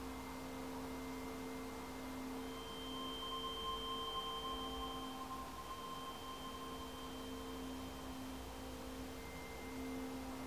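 A faint, steady hum made of several held pitches, some of which come in and fade out partway through, over low background noise.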